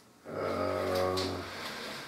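A man's long, low, steady voiced hesitation sound, held for about a second and a half and then trailing off.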